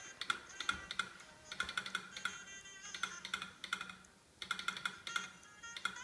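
Morse code being sent at a telegraph exhibit: quick irregular clicks with high beeping tones keyed on and off in short and longer pulses, pausing briefly about four seconds in.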